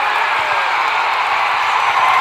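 Crowd cheering and whooping, heard as a steady wash of noise.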